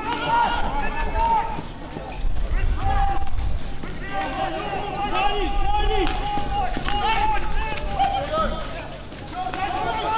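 Players' shouts and calls carrying across an outdoor field hockey pitch, some drawn out, with a few sharp knocks of stick on ball about two-thirds of the way through.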